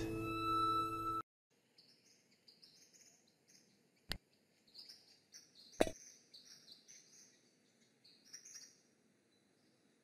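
A held music chord that cuts off about a second in, then faint birdsong chirping throughout. Two sharp clicks come a second and a half apart near the middle, the second louder.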